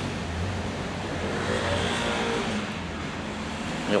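A motor vehicle's engine running as it passes, over a steady hiss of road traffic.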